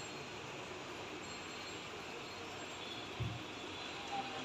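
Steady background hiss with one dull low thump about three seconds in.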